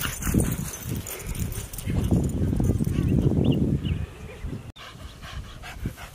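Two small dogs growling in play as they wrestle, a short burst near the start and a longer, louder stretch from about two to four seconds in.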